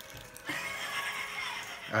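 A person's wordless, breathy vocal reaction, laugh-like, starting about half a second in, after tasting a jelly bean that turns out to be rotten-egg flavoured; background music plays under it.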